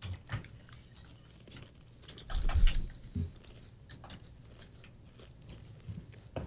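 Thin crisp chocolate sandwich cookies being bitten and chewed close to microphones: scattered small crunches and clicks, busiest a little over two seconds in.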